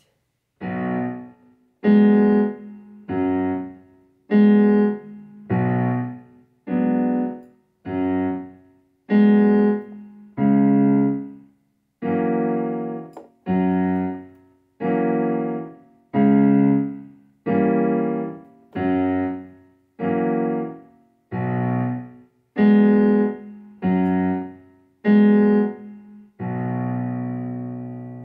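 A B minor sixth (Bm6) chord played on a digital piano, struck about two dozen times at roughly one a second, each held briefly then released, with the last one held longer near the end.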